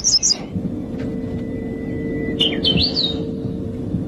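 Small birds chirping: a quick run of high chirps at the start and a short whistled phrase with rising sweeps about two and a half seconds in, over a steady low drone.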